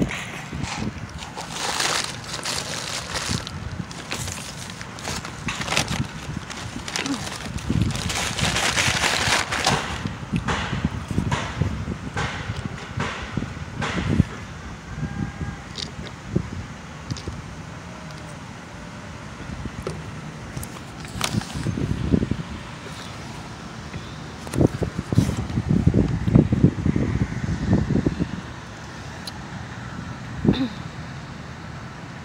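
Paper food wrapper rustling and crinkling close to a phone microphone, with clicks and knocks as the phone is handled. Later come sips from a fountain-drink cup through a straw and low bumps of handling.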